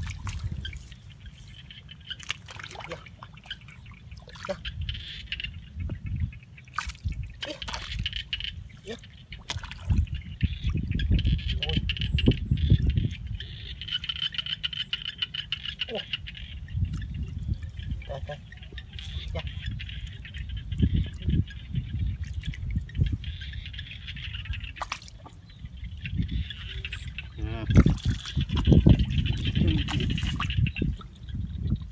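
Hands digging and squelching through wet paddy mud and shallow trickling water while groping for fish, with scattered small clicks and splashes. A heavy low rumble surges throughout, under a steady high hiss.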